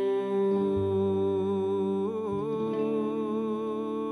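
Live worship band music played slowly: a long held vocal note over sustained guitar, keyboard and bass chords, the bass changing note about a second in and again about halfway through.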